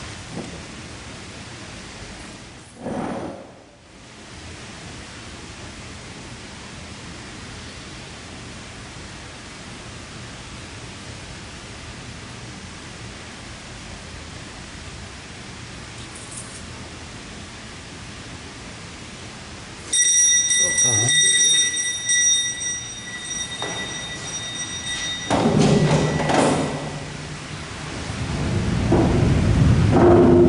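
Steady rushing rumble of the boat lift's water-powered winding machinery. About twenty seconds in, a high ringing tone with overtones sounds for about five seconds, and louder low rumbling builds near the end.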